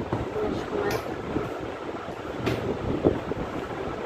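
Refrigerator door being shut, heard as a short sharp click about two and a half seconds in, over a steady low rumble of handling noise from a handheld phone camera. A smaller click comes about a second in.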